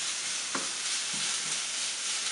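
Ground turkey and onion sizzling in a hot nonstick frying pan while a spatula stirs it, with a couple of short scrapes of the spatula against the pan.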